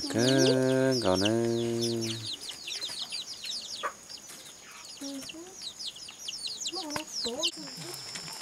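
Young chicks peeping: a steady stream of short, high, falling peeps, with a person talking over the first two seconds.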